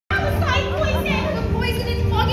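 Several children's voices calling out together over backing music.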